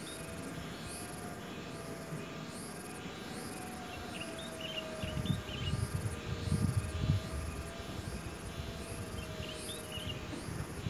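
Insects chirping in a steady, high-pitched pulse that repeats about every two-thirds of a second over a faint steady drone. A low rumble rises from about halfway in and fades near the end.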